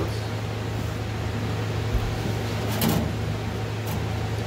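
Large ultrasonic cleaner running with a steady low hum and an even hiss from its tank of heated cleaning solution. A short rustle comes near the end.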